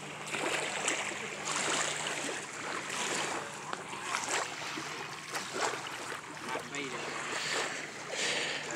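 Waterfront ambience: small lake waves lapping against the pier and wind on the microphone, an uneven rushing that swells and dips, with faint voices of people nearby.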